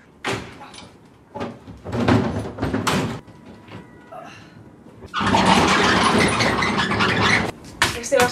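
Wooden bathroom cabinet knocking and bumping as it is carried down outdoor steps, followed about five seconds in by a louder rushing noise lasting about two seconds.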